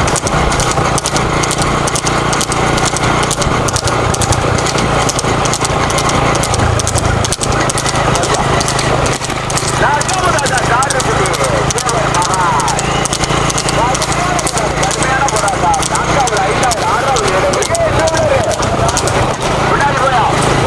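Racing horse's hooves beating fast and steadily on a paved road as it trots pulling a two-wheeled rekla cart, with a man's voice calling over it, strongest about halfway and again near the end.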